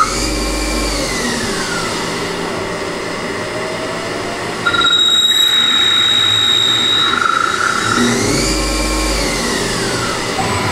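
CNC lathe machining a piston end: a whine glides up and back down near the start and again near the end as the machine's speed changes. From about five seconds in, a louder, steady high-pitched tone sounds for about two seconds while the tool cuts.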